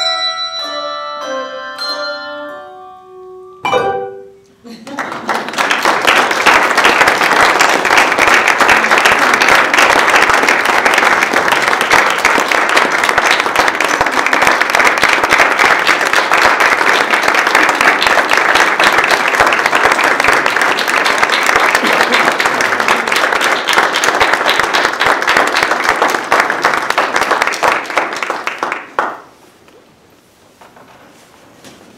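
A handbell choir ends a piece, its last chord ringing and fading, with one more bell struck about four seconds in. Then an audience applauds loudly for about 25 seconds, and the applause dies away near the end.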